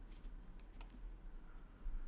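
A few faint clicks from a computer keyboard over quiet room hiss, one near the middle and a short cluster near the end.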